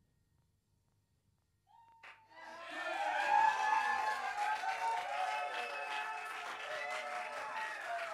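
A near-silent pause of about two seconds, then an audience breaks into loud applause with cheering and whooping.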